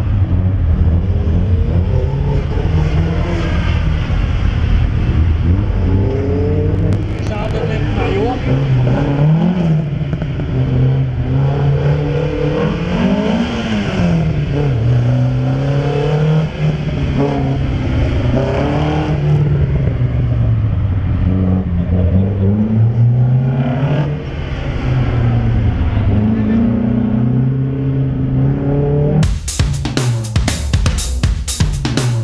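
Slalom cars' engines accelerating hard and lifting off in turn through a coned course, the engine pitch climbing and dropping every few seconds. Drum beats come in near the end.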